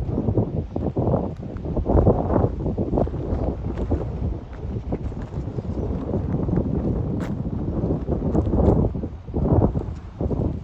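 Gusty wind buffeting the microphone, a loud rumbling rush that rises and falls from moment to moment as a storm moves in.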